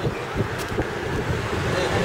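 Wind buffeting the microphone in uneven gusts, with street traffic noise underneath.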